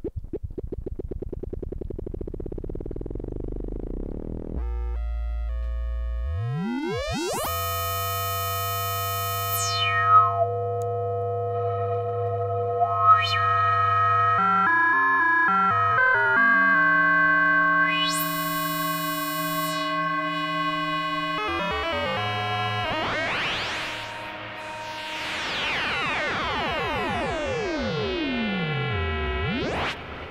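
Eurorack modular synthesizer: a sine wave oscillator modulated at audio rate by a Rossum Control Forge sequence, giving buzzy, metallic tones. It opens as a fast buzzing pulse, turns into held tones with pitches that glide and jump, and ends in a swirl of sweeps rising and falling.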